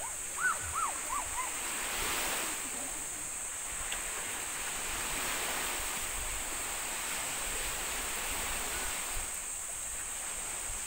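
Small waves washing in over a shallow reef beach, a steady surf wash that swells and eases. A few short high-pitched chirps sound near the start.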